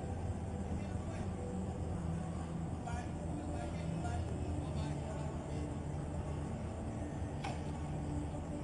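Steady low rumble of outdoor background noise with faint, indistinct voices in the distance.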